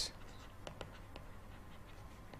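A pen writing a word by hand on paper: faint, short scratching strokes, several a second.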